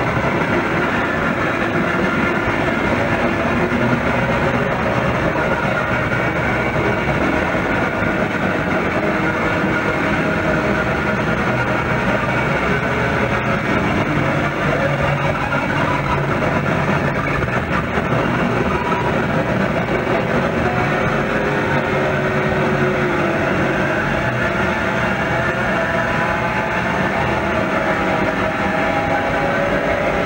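Live rock band with distorted electric guitar and bass playing a dense, unbroken wall of noise. It is heard through a crude, overloaded audience recording made on a Minidisc.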